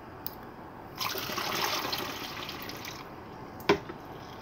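Hibiscus drink (zobo) being poured into a plastic bottle, a rushing pour starting about a second in and tailing off. A short sharp knock comes near the end.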